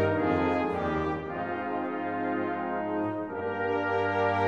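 Background music, brass-led and orchestral, holding slow sustained chords that change about three seconds in.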